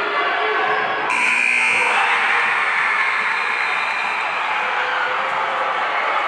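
Gymnasium scoreboard buzzer sounding suddenly about a second in as time expires at the end of the second quarter, over a steady din of crowd noise.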